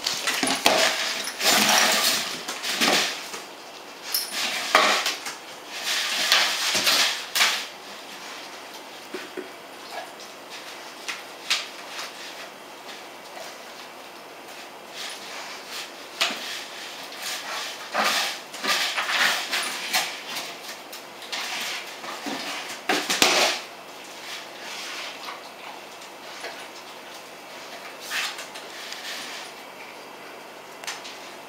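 A dog's tube toy clattering, knocking and rolling on a lino floor as a German shepherd noses and paws it about, in bursts of rattling knocks with quieter stretches between.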